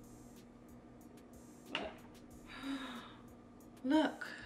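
A woman's breathing sounds: a short sharp intake of breath a little under two seconds in, then a breathy sigh, and a voiced sound starting near the end. A faint steady hum runs underneath.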